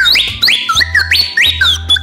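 A small stick-shaped wooden whistle from Thailand blown in a quick series of rising whoops, each sliding up to a high piercing note and breaking off, about five in two seconds. It imitates the sharp whistling of Cossack songs.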